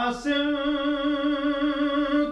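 Unaccompanied male voice reciting an Urdu noha lament: after a quick breath he holds one long sung note with a slight waver.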